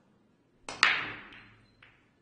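Break shot at Chinese eight-ball. The cue tip clicks on the cue ball, and a split second later the cue ball cracks into the racked balls. A clatter of balls knocking together follows, fading over about a second, with one more click near the end.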